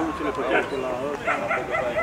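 Many people talking at once at a busy animal market, with a dog yipping several times in quick succession in the second half.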